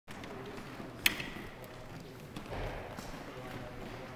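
A single sharp click about a second in: a Subbuteo player's figure flicked with a fingertip across the cloth pitch, snapping against the plastic ball.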